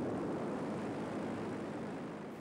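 Steady drone of an aircraft engine.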